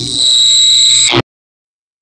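A loud, steady, high-pitched electronic beep lasting about a second, which cuts off suddenly into silence.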